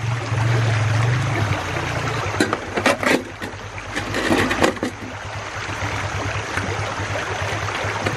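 Shallow stream water running steadily around the sluice box, with a few short metallic clacks and knocks as the riffle tray and mesh screen are fitted back into the aluminium sluice box, a couple of seconds in and again near the middle.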